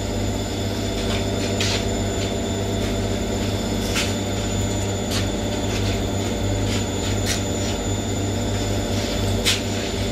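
Front-loading washing machine on its spin cycle: a steady hum of the motor and spinning drum, with a few short, sharp clicks along the way.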